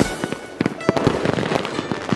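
Ground fireworks fountains crackling with many rapid, irregular pops.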